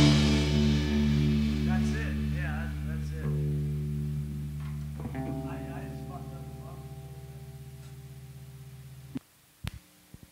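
The last guitar and bass chord of a rock song is left ringing and slowly dies away, with a fresh note struck about five seconds in. About nine seconds in, the strings are muted abruptly, followed by a sharp click.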